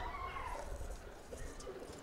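Faint bird calls, a few short gliding notes near the start, over a low rumble.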